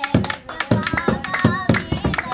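Dholak hand drum played in a steady rhythm, about four strokes a second, each bass stroke sliding down in pitch, with hand claps and a voice singing along over it from about halfway in.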